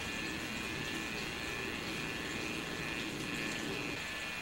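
Steady background noise: an even hiss and low hum with a few faint steady high tones, and no distinct events.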